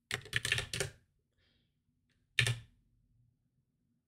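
Computer keyboard keystrokes: a quick run of key presses in the first second, then another brief burst of key presses about two and a half seconds in.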